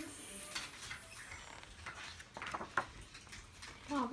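Pages of a large hardback photo book being turned and handled: quiet paper rustling with a few soft taps, the loudest a little past the middle.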